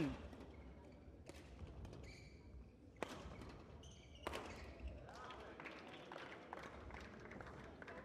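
Badminton rally: faint, sharp racket strikes on the shuttlecock, the clearest two about three and four seconds in, with a few lighter hits after.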